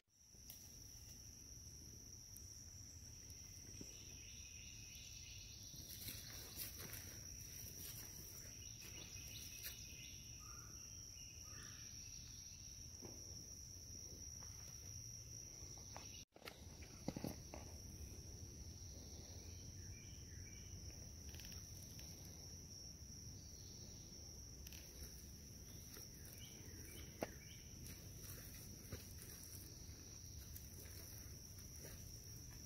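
Faint forest ambience dominated by insects keeping up a steady high-pitched drone, with a few faint chirps and occasional light knocks. The drone cuts out abruptly for a moment about halfway through.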